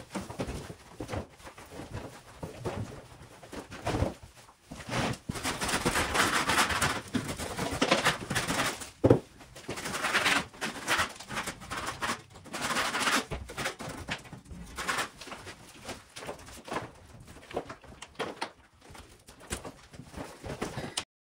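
Loose plaster and old paint being scraped off a wall by hand, in irregular rasping strokes with scattered knocks and the clatter of chips.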